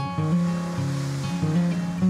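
Steel-string acoustic guitar playing held chords in a folk song between sung lines, with a steady wash of ocean surf under it.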